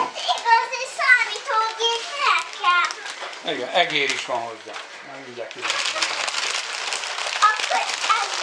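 A small child and a woman talking, then from about halfway a continuous crinkling rustle of gift-wrapping paper being handled.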